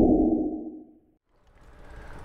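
A low, muffled whoosh sound effect for a logo intro, fading out about a second in. After a brief silence, faint wind and road noise from the bike ride fades in near the end.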